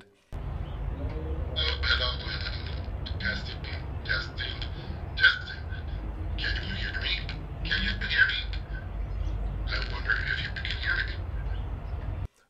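Outdoor ambience: a steady low rumble with about eight short, harsh, high-pitched bird squawks scattered through it.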